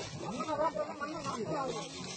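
Steady hiss of methane escaping from a ruptured gas pipeline, with voices talking over it.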